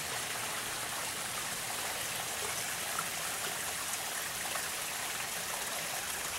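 Steady rush and trickle of water running over the rocks of a pump-fed backyard pond waterfall.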